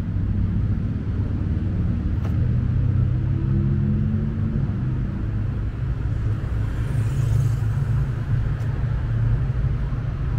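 Road traffic on the adjacent city street: a steady low rumble of engines, with the hiss of a passing vehicle swelling about seven seconds in.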